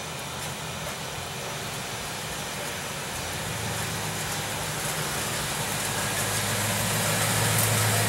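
A 1969 Camaro's swapped-in LS1 V8 running at low speed as the car rolls slowly up and past, a steady low engine note that grows louder as it comes closer.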